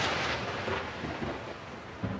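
Thunder sound effect: the long rumble of a thunderclap fading away, with a smaller second swell near the end.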